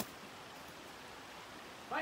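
Faint, steady outdoor background hiss, with one sharp click right at the start and a voice starting just at the end.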